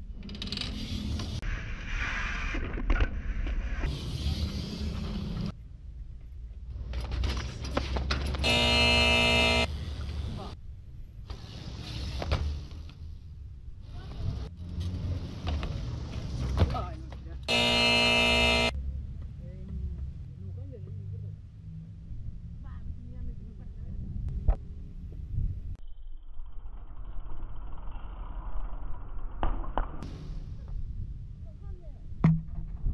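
BMX bike tyres rolling and landing on concrete skatepark ramps, with wind on the camera microphone and several sharp knocks of landings. Twice, about nine and eighteen seconds in, a loud steady pitched tone sounds for about a second.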